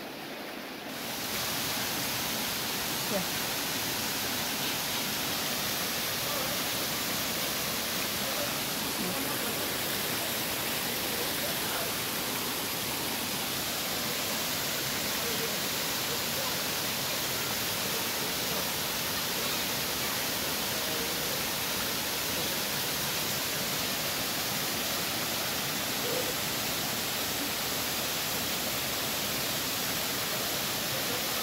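Small jungle waterfall cascading over rock into a pool, a steady rushing hiss of falling water that comes up to full level within the first second or two.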